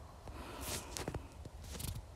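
Faint, scattered soft knocks and rustling, with a brief hiss about two thirds of a second in and a few quick clicks near the end.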